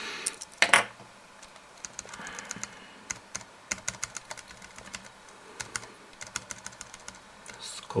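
Computer keys clicking lightly and irregularly, a few presses at a time, while pages of photos scroll on screen. A short, louder noise comes just under a second in.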